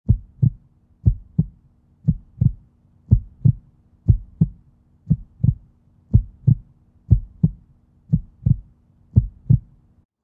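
Heartbeat sound effect: low double thumps, lub-dub, about one beat a second, ten beats in all, over a faint steady hum.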